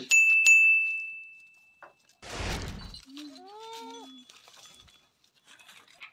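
A single bright bell-like ding from a subscribe-button notification sound effect, ringing and fading away over about two seconds. It is followed by a short rushing noise, then a brief rising goat bleat.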